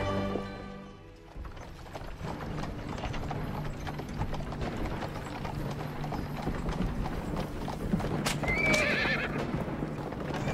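Horses' hooves clip-clopping steadily on a dirt track as a mounted column moves along, with one horse whinnying briefly about eight and a half seconds in. Music fades out in the first second.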